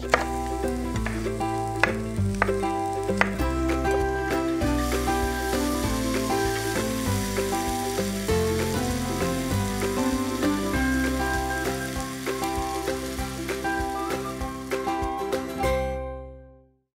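Sliced mushrooms and onions sizzling in a hot frying pan, the hiss setting in a few seconds in, under background music. A few knife knocks on a wooden chopping board come in the first seconds.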